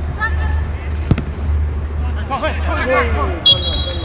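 Footballers shouting to one another on the pitch, with a single sharp thud of a ball being kicked about a second in, over a steady low hum.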